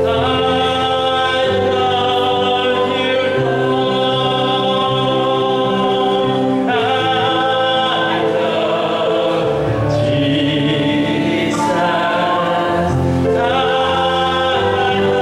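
Worship song: a man singing over sustained electronic keyboard chords that change every second or two.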